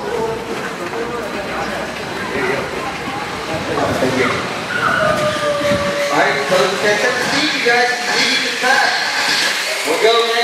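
Electric RC sprint cars with 13.5-turn brushless motors racing on a dirt oval: motor whines rise and fall in pitch as the cars accelerate and slow through the turns, over a steady hiss of tyres on dirt.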